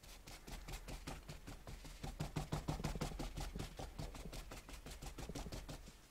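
A wad of paper towel dabbed rapidly on paper over the work table, making soft taps at about seven or eight a second, loudest in the middle.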